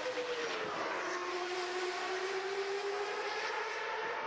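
Racing car engine sound at the circuit over a steady background hiss: a single engine note slowly drops in pitch over about three seconds, then begins to rise again near the end.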